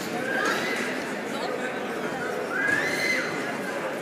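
Spectators shouting over a steady murmur of crowd voices: two shrill, rising yells, a short one about half a second in and a longer, louder one near three seconds.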